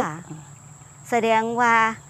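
Crickets giving one steady high-pitched tone. A woman starts speaking Thai about a second in.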